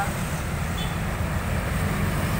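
Steady low rumble of road traffic from a busy street.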